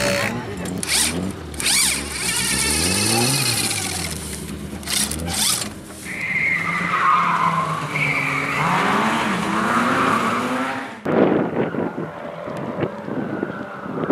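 Lada 2101 rally car's four-cylinder engine revving hard, its pitch rising and falling repeatedly, with a high tyre squeal over a few seconds near the middle. About three-quarters of the way through the sound cuts abruptly to a more distant engine note with wind on the microphone.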